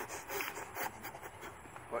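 A man breathing out in quiet short puffs through pursed lips, several a second.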